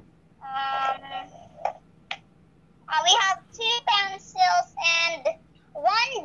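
A young girl singing a short sing-song phrase in a high voice: one held note about half a second in, then a run of several sung syllables in the second half.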